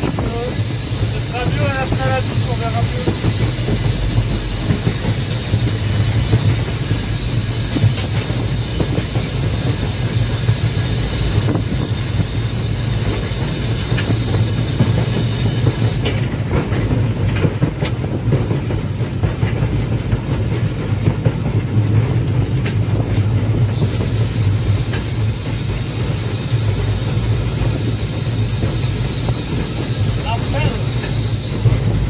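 A metre-gauge heritage train hauled by a Haine-Saint-Pierre steam locomotive running along the line, heard from the front of the train: a steady rumble of wheels on rail with a few faint clicks over the track.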